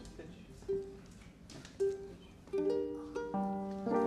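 Ukulele being tuned: one string plucked three times at the same pitch, then several strings plucked one after another near the end as the tuning is checked.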